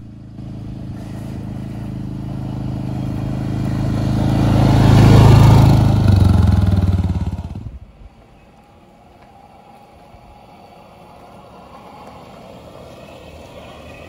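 A gasoline ATV engine drives past, growing louder to its peak about five seconds in, then cuts off sharply just before eight seconds. It is followed by a 72-volt electric Bad Boy Buggies Recoil side-by-side approaching, far quieter: only a faint, slowly growing sound.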